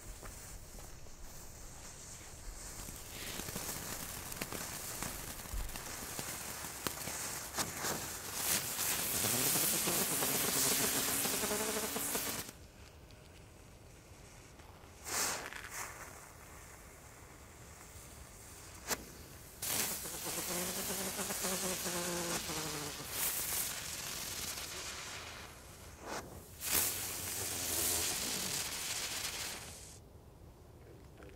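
Ground fountain firework (a Keller 'Zauberbox') spraying sparks with a loud hiss that comes in several phases. It cuts off suddenly about twelve seconds in and comes back, with a wavering whistle in two of the phases and a few sharp cracks between them.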